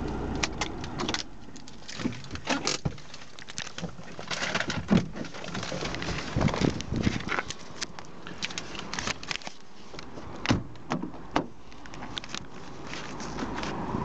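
Clicks, knocks and rustles from someone getting out of a car, with the car door and a jangle of keys. A low hum stops about a second in.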